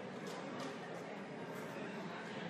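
Indistinct background chatter of many voices in a large hall, steady, with no close voice.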